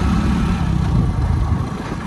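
Wind noise on the microphone and a two-wheeler's engine running while riding; the low noise eases a little near the end.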